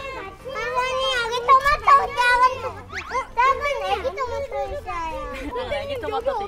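Young children chattering, their voices high-pitched.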